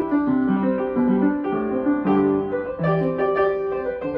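Acoustic upright piano played solo: a brisk tune of quickly changing notes over a lower accompanying part.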